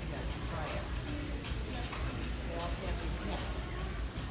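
Faint background voices with scattered light clicks and knocks over a steady low hum.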